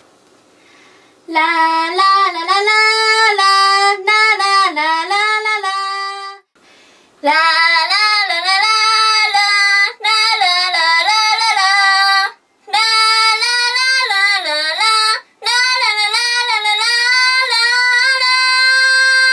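A young woman singing a lead vocal take into a studio microphone, with no backing music heard. She comes in about a second in and sings several phrases, with a short pause near the middle and brief breaths between the later lines.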